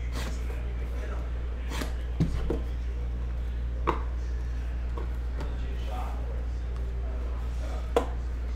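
A few sharp taps and clicks from cardboard trading-card boxes and packs being cut open and handled, the loudest around two seconds and four seconds in and one at the very end, over a steady low hum.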